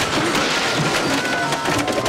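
A dense clatter of crashing and rattling from a cartoon fight, heard over background music.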